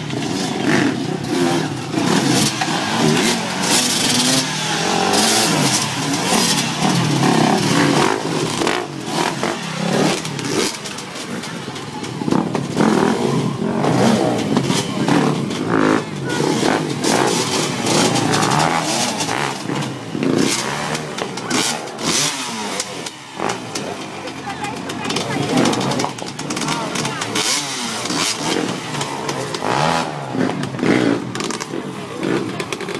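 Enduro dirt-bike engines revving, with the revs rising and falling repeatedly as riders work the bikes over large logs, mixed with steady crowd chatter.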